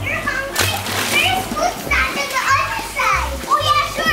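Young children's voices, high-pitched and playful, while they play in a shallow inflatable pool, over background music with a steady bass line.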